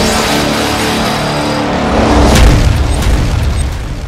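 Cinematic logo-intro music with a deep boom about two and a half seconds in, the loudest moment, fading toward the end.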